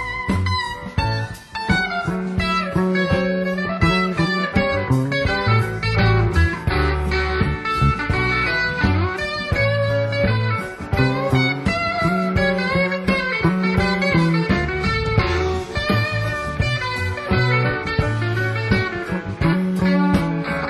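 Live rock band playing an instrumental passage: an electric guitar lead with bending notes over bass guitar and drums.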